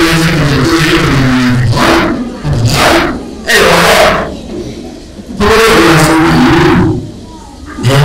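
Speech only: a man speaking Burmese into a handheld microphone, in phrases broken by brief pauses.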